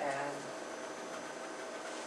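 A voice trails off in the first half second, then a steady background hum with faint steady tones, the room noise of a meeting room.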